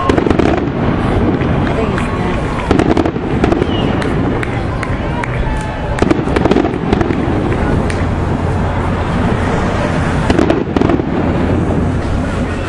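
Many sharp pops and cracks coming irregularly over a loud, noisy background, with voices mixed in.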